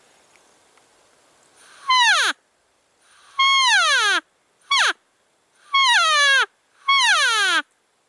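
Primos cow elk call blown close to the microphone in five loud mews, each a falling whine, the third one short, starting about two seconds in. The hunter is calling to draw the spike bull closer.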